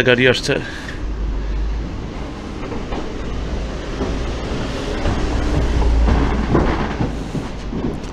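A car rolling across the wooden plank deck of a covered bridge: a low rumble with the loose boards knocking and clattering, swelling to its loudest about six seconds in.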